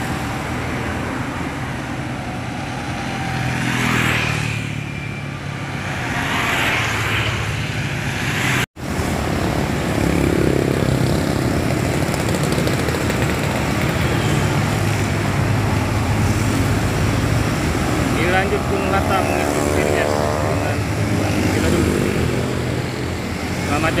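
Road traffic passing close by: motorcycles, cars and buses going past with steady engine and tyre noise, swelling as vehicles pass. About three-quarters of the way through, a short pitched sound with several rising tones cuts through the traffic.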